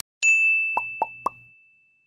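Animated-logo sound effect: a bright, high chime rings out and fades away over about a second and a half, with three short pops in quick succession under it, about a quarter second apart.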